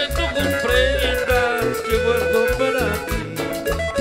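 Live Latin tropical dance band music, cumbia: a steady, even beat of bass and percussion with a melody line played over it.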